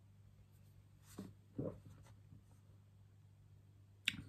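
Near silence with a low steady hum, broken by two soft swallows of beer from a glass a little over a second in.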